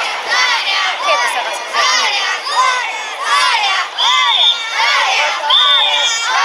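Danjiri rope pullers, many of them children, chanting together in short rhythmic shouts, about two a second, as they run hauling the float. A shrill whistle sounds twice in the second half.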